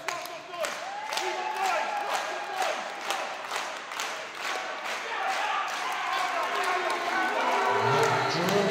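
Audience clapping in a steady rhythm, with voices calling out over it.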